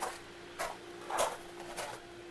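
A few soft, evenly spaced footsteps on outdoor pavers, over a faint steady hum.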